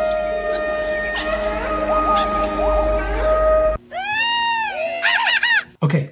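Segment stinger built from film sound: a long held horn note with short gliding calls over it, cut off sharply about four seconds in, followed by a run of creature calls that arch up and down in pitch, Ewok chatter.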